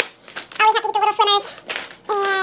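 A woman's voice played back sped up: fast, high-pitched chatter in short runs that cannot be made out as words.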